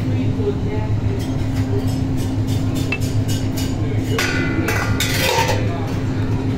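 Buffet restaurant ambience: a steady low hum under the voices of other diners, with a run of light clinks of serving utensils against dishes and metal lids in the first half, and nearby voices a little after four seconds in.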